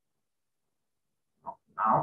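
Near silence, then a short voice-like sound about one and a half seconds in: a brief first note followed at once by a louder, longer one.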